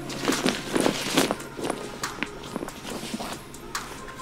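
A fabric backpack being handled and packed on a carpeted floor: a run of irregular rustles and soft knocks, thickest in the first second or so.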